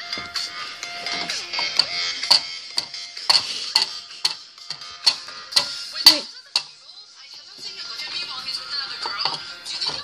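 Music playing in the background, with a run of sharp clicks and taps from plastic figurines being handled on a glass tabletop; the taps come thickly over the first seven seconds, the loudest about six seconds in, then thin out.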